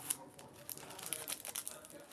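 Small pink plastic packaging bag crinkling irregularly as it is opened and handled by hand.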